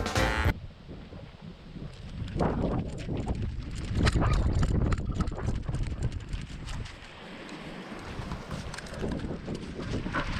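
Background music cuts off about half a second in. After that comes a dog moving along a gravel road with the camera riding on its back: irregular paw footfalls crunching on the gravel and the mount jostling, with some wind on the microphone.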